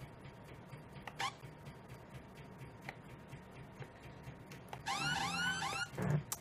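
Faint scattered clicks from computer keys and mouse, then near the end a quick run of four identical rising-and-falling electronic pitched sweeps: a synth sound played back from music-production software on the laptop.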